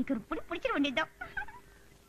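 A cat meowing a few times, the calls ending about a second in.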